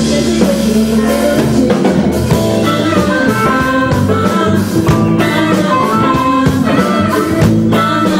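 Live blues-rock band playing an instrumental passage: a harmonica played through a handheld microphone takes the lead over electric guitar, bass, keyboards and drum kit.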